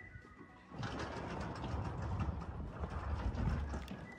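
Wind buffeting the microphone: a fluctuating low rumble and rush that starts about a second in.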